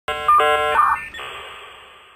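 Synthesized electronic tones: a few short notes changing quickly, then one held tone that fades away slowly.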